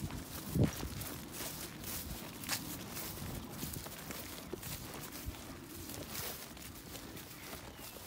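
Footsteps on short grass: soft irregular thuds and rustling, with the firmest step about half a second in.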